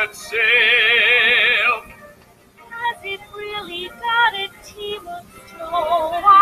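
A recorded show tune with a singer: one long held note with vibrato, a brief lull about two seconds in, then shorter sung phrases that build back up near the end.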